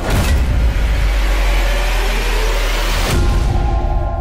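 Cinematic trailer sound effect: a sharp hit opening into a loud, sustained rumbling roar, cut off by a second hit about three seconds in, after which a low steady drone sets in.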